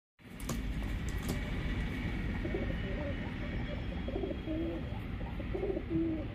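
Pigeons cooing: a low, warbling coo repeated several times from about two seconds in, over a steady low rumble.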